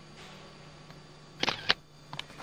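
Camera shutter clicking: two sharp clicks close together a little past the middle, over a faint steady hum.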